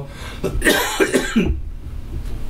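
A man coughing into his fist: a few short coughs in quick succession, ending about a second and a half in.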